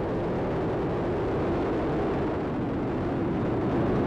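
Falcon 9 first stage's nine Merlin engines at full thrust during ascent, heard from the ground as a steady, deep rumble.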